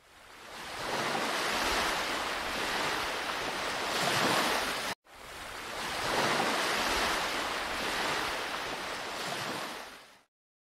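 Sea surf washing on a beach: a steady rush that swells and eases, breaking off abruptly about halfway through and fading back in.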